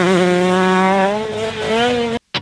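2020 KTM 125SX single-cylinder two-stroke engine running at high revs under load. Its pitch wavers during the first second, then holds steady and rises slightly near the end.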